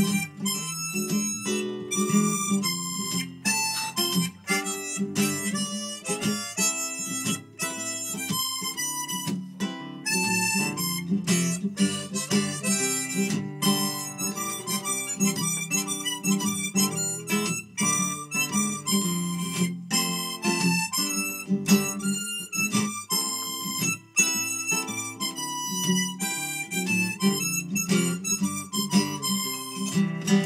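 Harmonica played in a neck holder over a strummed acoustic guitar: an instrumental harmonica break in a folk song, with steady even strumming underneath.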